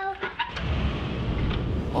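A steady low rumbling rush begins about half a second in and keeps on: a blast-off sound effect as the boy flies up out of the door.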